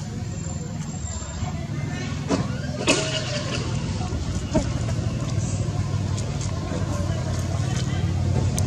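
Steady low hum of a running motor engine, with a few short faint clicks a few seconds in.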